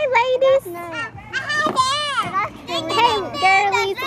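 Young children's high voices chattering and calling out, with pitch sliding up and down.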